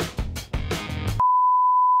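A short stretch of music, then a single steady high beep that starts about a second in and holds to just past the end: a censor bleep laid over a swear word.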